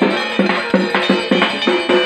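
Festival drums beaten with sticks in a fast, steady rhythm, about five or six strokes a second, each stroke ringing briefly with a pitched tone.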